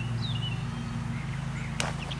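A young chicken gives a couple of short, high cheeps near the start over a steady low hum, and a single sharp click comes near the end.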